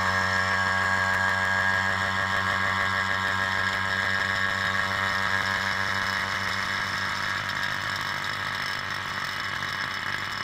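Electric vacuum pump running steadily with a low hum, pulling a vacuum on a cup of epoxy resin to degas it. The sound eases slightly over the last few seconds.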